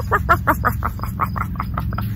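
A woman imitating a dog with a quick, even run of about ten short yapping, panting vocal sounds, about five a second. Crickets chirp steadily underneath.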